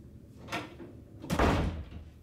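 Interior door slammed shut, a loud sudden bang about a second and a half in, after a lighter knock about half a second in.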